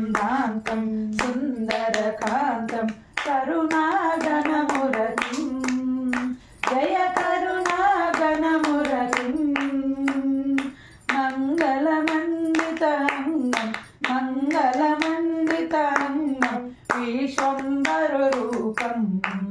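A single voice singing a devotional song (bhajan) in long held phrases, with hand claps keeping a steady beat throughout.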